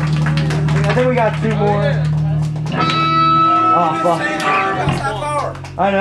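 Electric guitars left ringing at the end of a song, with voices shouting over them. The held notes stop about two and a half seconds in, and a lower one rings on to the end.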